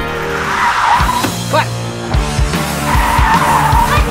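Car tyres squealing as a car pulls away hard: two long squeals, one early and one near the end, over background music with a thumping beat.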